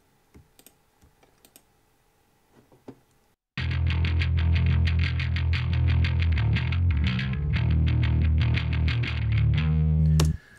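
A few faint mouse clicks, then about three and a half seconds in a distorted electric bass guitar, a Fender Precision Bass, starts suddenly. It plays a fast picked riff with a deep, grinding tone, its highs rolled off, through Marshall-style overdrive and Ampeg bass-amp simulation with heavy compression.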